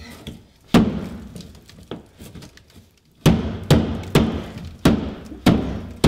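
Heavy thuds of feet and hands striking the thin walls of a small enclosure: one blow about a second in, then five more roughly every half second from about three seconds in, each ringing briefly in the box.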